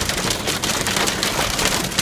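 Heavy wind-driven rain beating on a truck's roof and windshield, heard from inside the cab as a dense, steady patter of countless small impacts.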